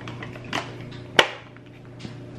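Plastic lunch container being closed: a soft knock about half a second in, then one sharp click a little after a second as the top part is set on and snaps into place.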